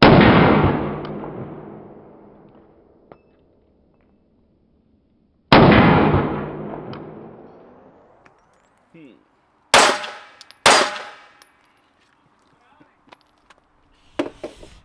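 Four 9 mm pistol shots from a Glock 19 Gen 4 fitted with a Radian Ramjet compensator, firing 115-grain Fiocchi range ammunition. The first two, about five seconds apart, each ring out in a long fading echo; the last two crack in quick succession, about a second apart, near the end.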